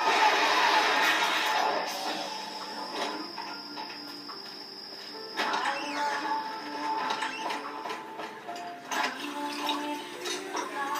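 Animated TV ad soundtrack heard through a television speaker: a noisy whooshing rush fades over the first two seconds, then soft music and sound effects with held notes that shift in pitch.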